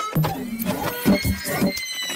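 Intro sting for an animated logo: music and sound effects with clicks and ringing tones.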